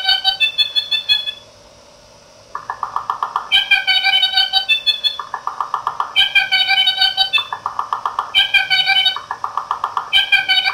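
Circuit-bent bird-song calendar sound strip playing a recorded ivory-billed woodpecker call, retriggered over and over by an oscillator so that the call is chopped and restarted in quick succession. Short bursts of a fast-pulsing tone alternate with clipped stacks of steady tones. It stops a little over a second in and starts again about a second later.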